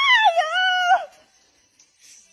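A cat's long, drawn-out meow that rises and then falls in pitch, wavering in the middle, and ends about a second in with a downward slide.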